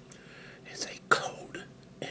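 A man speaking softly in a near-whisper, a few short words between pauses.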